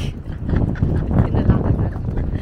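A woman laughing hard in a run of short bursts, with wind buffeting the microphone underneath.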